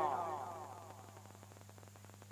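The end of a man's voice through a microphone and loudspeakers, a drawn-out note falling in pitch and fading away within the first second. After that only a faint steady electrical hum remains.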